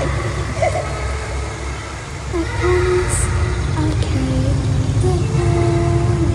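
Ceremony sound system heard from the audience stands: a deep, steady rumble with a few held tones rising above it, each lasting about half a second to a second.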